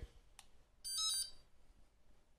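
A faint click, then about a second in a short electronic chime of several steady high tones from an EasyTurn queue-number display. The chime signals that the display has taken the call button's signal on the shared channel and stepped the number on.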